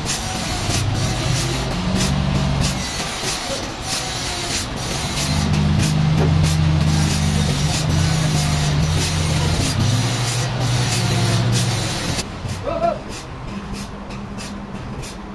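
Toyota forklift's engine running under load, its speed rising and falling in steady steps, over a steady hiss. The sound drops quieter near the end.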